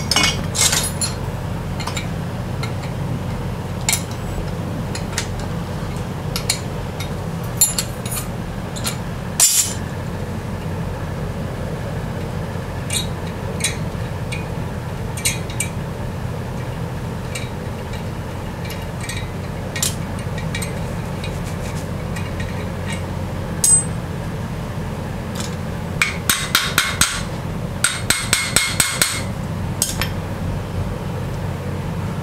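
Hammer blows and metal clinks on a steel bearing mold fixture as it is worked loose from a freshly poured babbitt bearing. There are single knocks every few seconds, then two quick runs of rapid taps near the end, over a steady shop fan hum.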